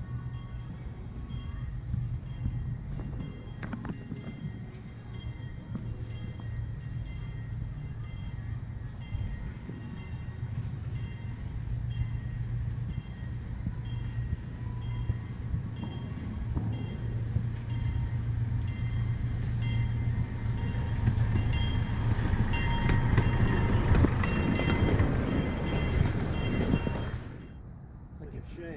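A miniature park train's locomotive approaching and pulling in, its bell ringing in steady strokes a little over once a second over the engine's low running hum, which grows louder as it nears and drops away near the end.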